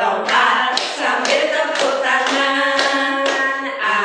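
A group of women singing a children's action song together, with sharp claps keeping time about twice a second.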